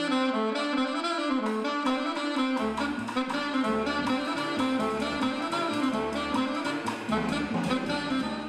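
Alto saxophone playing a flowing, simple jazz melody with a live band. Low double-bass notes join underneath about two and a half seconds in.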